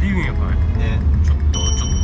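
Steady low road-and-engine rumble inside a moving car, under background music and brief talk. About one and a half seconds in, a high bell-like ringing tone starts and holds.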